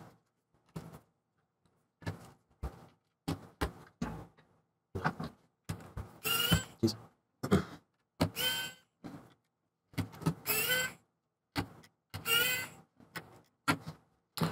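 Precision screwdriver undoing the small heat-sink screws on a MacBook Pro logic board: a string of short separate clicks and scrapes, with four brief squeaks about two seconds apart in the second half.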